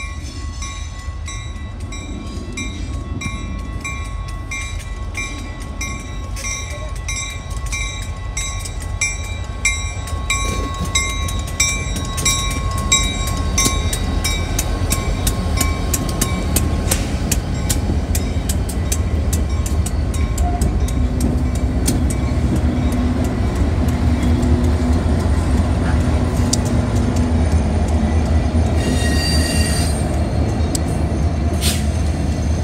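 Freight train led by EMD SD40-2F diesel locomotives approaching and passing close by, the engine rumble and wheel noise growing steadily louder. Through the first half, a grade-crossing bell rings about twice a second. From about halfway, wheels click rapidly over the rail joints and crossing.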